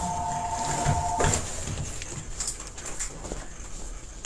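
A steady electronic tone of two pitches sounding together, held until it cuts off about a second in. Faint room noise follows.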